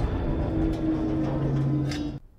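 Film soundtrack: low held notes sustained over a rumbling, noisy effects bed, with a short sharp hit near the end.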